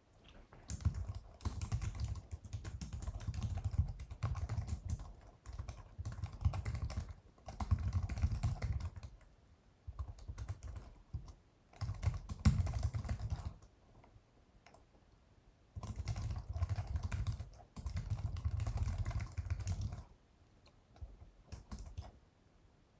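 Typing on a computer keyboard, close to the microphone, in bursts of rapid keystrokes a second or two long with short pauses between them.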